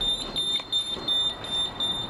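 A thin, steady high-pitched electronic tone with brief dropouts, over a rustling background noise.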